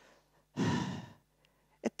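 A woman's sigh, one breath of about half a second close to a headset microphone, in a pause while she searches for words; a small mouth click follows just before she speaks again.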